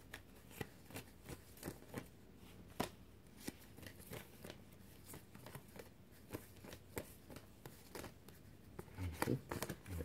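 A tarot deck being shuffled and handled by hand: faint, irregular card flicks and slaps, about one or two a second.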